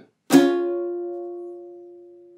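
A C-sharp major chord strummed once on a ukulele about a third of a second in, then left to ring and slowly fade.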